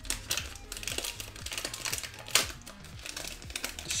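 Foil trading-card booster pack being crinkled and torn open by hand: a run of irregular sharp crackles and rips, the loudest a little past the middle, over quiet background music.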